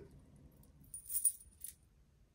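Links of a heavy solid sterling silver chain bracelet clinking together as it is handled: a brief jingle about a second in, then a lighter clink.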